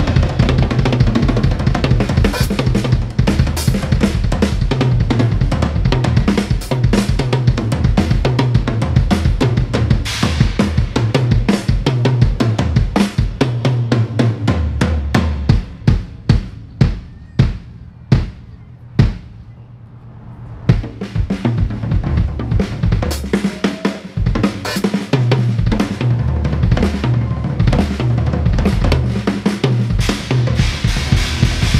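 Live drum solo on a full drum kit: fast, dense bass-drum, tom and snare patterns under crashes on Zildjian cymbals. A little past halfway it thins out to a few spaced single strikes and a quieter gap, then builds back up to dense playing.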